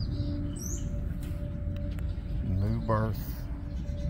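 Birds chirping over a low, steady outdoor background, with one short vocal call rising in pitch about two and a half seconds in.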